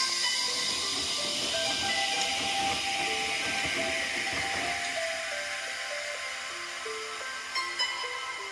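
Background music of short stepping notes over a hissing rush that swells a couple of seconds in and then fades: water spraying into the drum of a Samsung front-loading washing machine.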